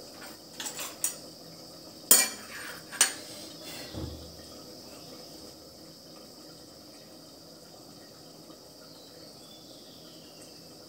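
A few clinks and knocks of a metal ladle against an aluminium cooking pot and other kitchen utensils, the loudest about two seconds in, the last with a dull thump about four seconds in. After that only a faint steady hiss remains.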